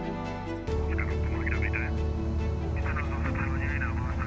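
Background music that stops at a cut less than a second in, followed by the steady low drone of a light single-engine plane's piston engine heard inside the cabin.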